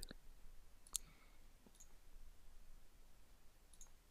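A single computer mouse click about a second in, with a few fainter ticks after it, against near silence.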